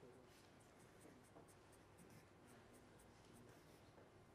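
Faint scratching of a pen on paper: a quick series of short strokes as hatch marks are drawn along a line.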